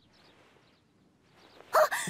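A quiet morning room with a few faint, short bird chirps, then a sudden loud, pitched call near the end.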